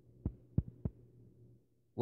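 Three soft, low thumps about a third of a second apart, over a faint steady low hum.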